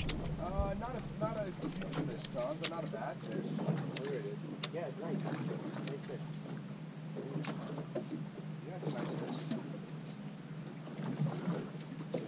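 Faint, indistinct voices of anglers aboard a fishing boat over a steady low hum, with a few sharp single clicks or knocks scattered through.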